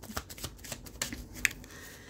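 A deck of tarot cards being shuffled by hand: a quick run of soft card flicks that thins out toward the end.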